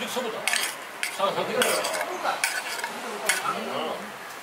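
Metal tongs clicking and scraping against a plate and a grill grate as slices of raw beef are picked up and laid on the grill, with a few sharp clinks. The meat starts to sizzle lightly on the charcoal grill.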